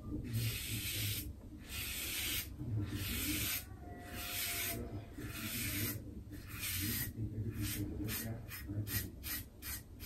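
Double-edge safety razor scraping through lathered stubble on a shaved scalp, on a first pass against the grain. Strokes run about a second each, then turn short and quick, about three a second, near the end.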